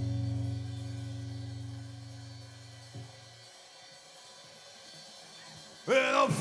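A held electric guitar note rings on and fades over about three seconds, stopped with a small click; a quiet stretch follows, then the guitar and drums crash back in loudly at the very end.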